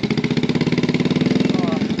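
Honda C90 step-through motorcycle's small single-cylinder four-stroke engine idling in an even, rapid beat, warmed up and ready to ride off.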